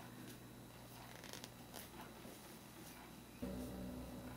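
Faint, scattered rustles of acrylic yarn being drawn through crocheted stitches with a tapestry needle, over quiet room tone. A low steady hum comes in near the end.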